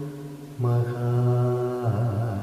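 A male Carnatic vocalist singing long held notes: one note fades out, then about half a second in a new note starts and is held steady before sliding down near the end. Heard through a Zoom call's shared audio.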